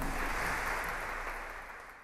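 Audience applause heard from backstage, a dense even clatter of clapping right after the aria's final orchestral chords, fading out.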